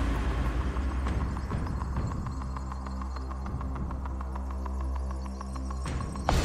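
Game-show suspense sound bed: a low, throbbing hum with a fast, steady ticking over it.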